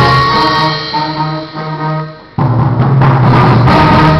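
Middle school concert band of second-year players performing. The sound thins and fades over about a second and a half, then the full band comes back in suddenly and loudly about two and a half seconds in.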